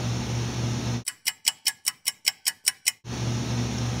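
Steady room hum, then about a second in it cuts out to total quiet for two seconds of rapid, even ticking, about six ticks a second, like a clock-tick sound effect laid over the pause; the hum returns near the end.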